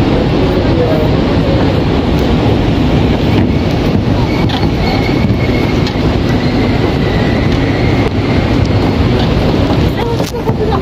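Wind buffeting the phone's microphone on an open rooftop terrace: a loud, steady low rumble, with voices of people in the background.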